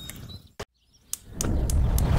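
A brief dead silence at an edit, bounded by two clicks, then a loud low rushing roar of grill flames flaring up that swells in near the end.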